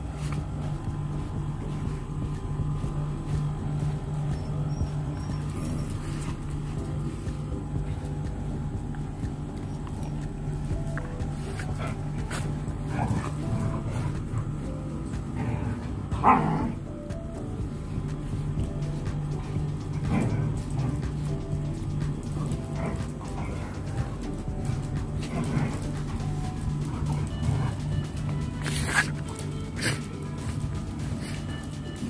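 Background music with a dog giving a few short barks during grooming, the loudest about halfway through.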